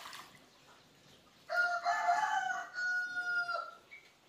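A rooster crowing once, starting about a second and a half in: a single crow of a bit over two seconds that ends on a long held note.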